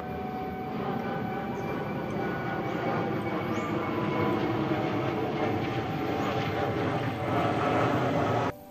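Jet airliner flying overhead: a steady, loud jet-engine roar that starts suddenly.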